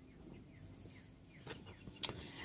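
Near silence, with a few faint, short falling bird chirps and two soft clicks near the end.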